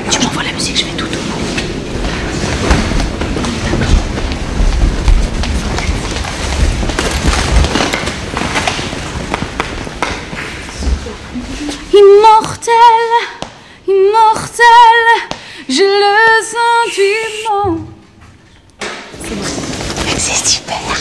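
A woman's voice sings a few long held notes with vibrato, in short phrases starting about halfway through: a singer's last vocal test before performing. Before it there is an indistinct low rumble of background noise.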